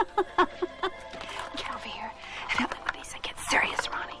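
A woman laughing in a quick run of short bursts, followed by soft, indistinct talk over quiet background music.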